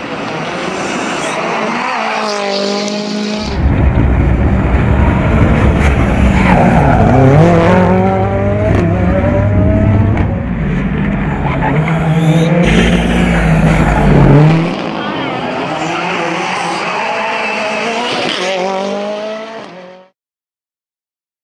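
Ford Fiesta R5 rally car's turbocharged four-cylinder engine revving hard through corners, the pitch climbing and dropping again and again with gear changes. It gets louder and fuller for about ten seconds from around the 3.5-second mark, then fades out at the end.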